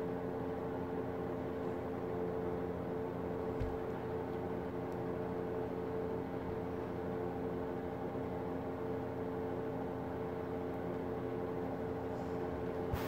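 A steady hum made of a couple of held tones over a low noise bed, unchanging throughout, with one faint low knock about three and a half seconds in.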